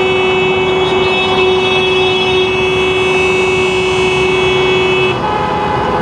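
Many vehicle horns sounding together in one long, steady blast over passing traffic, a commemorative salute. About five seconds in, most of them stop and a single higher-pitched horn carries on.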